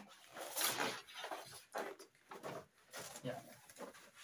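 Large sheets of glossy paper rustling and crackling in several irregular bursts as they are lifted and shaken out.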